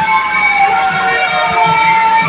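Live band music for a dance: a long held high note that dips slightly in pitch about half a second in and comes back up near the end, over a steady low beat.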